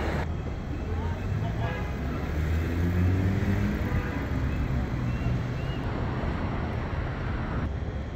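Street traffic: a motor vehicle's engine passing close by, loudest about three seconds in, over a steady low rumble of traffic, with faint voices of passers-by.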